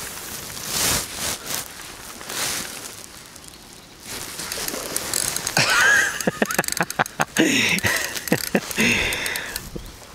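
Fishing reel ticking in rapid irregular clicks from about four seconds in as a hooked carp is played, the drag slipping under the fish's pull.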